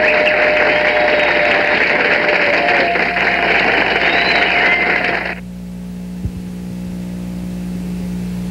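Studio audience applauding and cheering, cutting off suddenly about five seconds in. A steady low hum with a single click follows.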